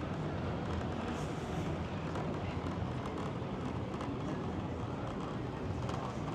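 Steady outdoor street noise of a busy seafront road: a low hum of passing traffic with general background bustle, no single event standing out.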